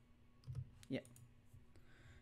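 A few faint, sharp clicks from a computer mouse and keyboard, one at about half a second with a soft thud under it.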